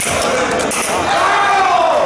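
A few sharp clacks from the foil exchange and the fencers' footwork on the piste, then a long shout that rises and falls in pitch as a fencer celebrates scoring the touch.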